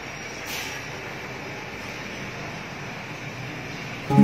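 Steady, even hiss of aquarium water and aeration running, with a brief swell about half a second in.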